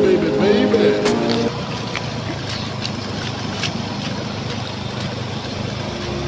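Background music for about the first second and a half, then a motor scooter engine running at low speed over a steady rushing noise from the swollen river.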